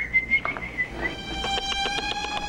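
Film soundtrack: a single high whistle-like tone glides up and then holds steady for about a second. Then the film's music score comes in with several sustained high notes.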